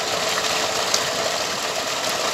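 Water gushing steadily from a solar pump's discharge pipe and splashing into a masonry water channel, with one brief click about halfway through.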